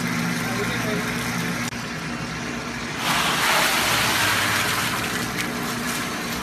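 Whirlpool ice-bath tub's pump motor running with a steady hum while the jets churn the water. About three seconds in, the rushing of the water grows louder for a couple of seconds.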